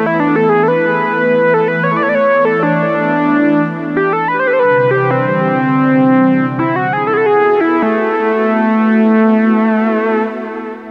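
Korg KingKORG analogue-modelling synthesizer played in split mode: a sustained pad chord in the lower keys under a synth lead melody in the upper keys. The pad chord changes twice, about halfway through and near the end.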